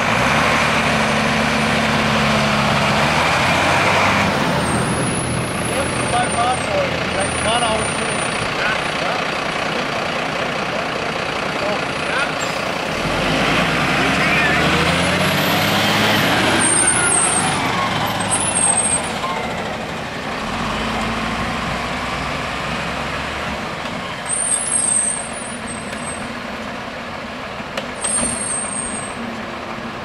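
Fire trucks driving past at low speed, their diesel engines running, with engine pitch rising and falling as each one passes and the hiss of air brakes.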